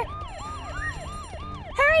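Siren sound effect in a fast yelp, each wail rising and falling about four times a second. A single whistle-like tone glides upward through the middle.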